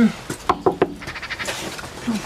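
Knuckles knocking on a front door: a quick run of three or four raps about half a second in, with a couple of fainter ones after.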